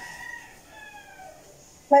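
A rooster crowing faintly: one drawn-out call that slowly falls in pitch and fades out about a second and a half in.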